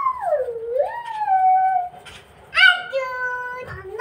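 A person's voice in long drawn-out sliding notes: one swooping note that falls, rises again and holds, then after a short pause a second, steadier held note.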